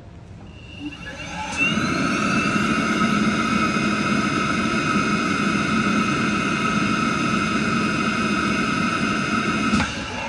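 YG(B)461G air permeability tester's suction fan starting up with a brief rise in pitch, then running steadily with a high whine and stopping just before the end. This is an air-tightness check with the test head sealed, which the machine passes.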